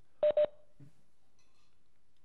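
Two quick electronic beeps at the same pitch, close together, from the video-conferencing software's alert tone.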